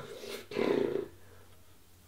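A sleeping person snoring: one low, rough snore about half a second long, starting about half a second in.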